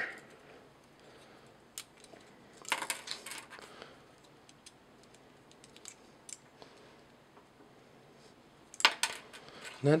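Scattered light clicks and taps of hard plastic toy parts being handled, as small sword pieces are folded and pegged into the back of a transforming robot figure, with a short cluster of clicks about three seconds in and another near the end.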